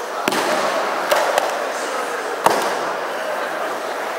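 Four sharp slaps of bodies and hands hitting ju-jitsu training mats, echoing in a large hall, the loudest about two and a half seconds in, over the steady chatter of many people.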